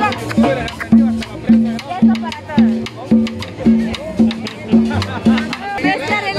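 Live band music with a drum kit playing a steady dance beat, a short low note repeating about twice a second under percussion hits.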